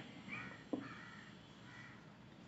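Three faint, short bird calls, with a single sharp click about three-quarters of a second in.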